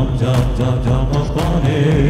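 A man singing a sustained, wavering vocal line into a handheld microphone over a loud backing track with drums and bass.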